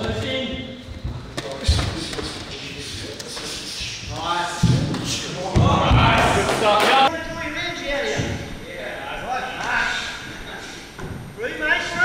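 Thuds of gloved punches and kicks landing and bare feet hitting a wooden floor during sparring, echoing in a large hall, with voices in the room.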